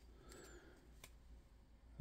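Near silence with faint handling of glossy trading cards being shuffled in the hands, with one light click about a second in.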